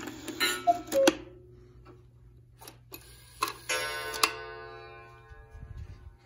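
Cuckoo clock set off by hand: a two-note cuckoo call with its gong struck in the first second, then further gong strikes a few seconds in that ring out slowly.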